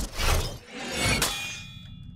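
Metal fight sound effects: a sharp hit just after the start, then a metallic clang about a second later that rings on with a high, fading tone, like a steel sword blade being struck.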